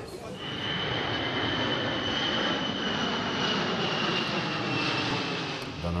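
Aircraft engines running overhead: a steady noise that starts a moment in, with a high whine that falls slightly in pitch toward the end.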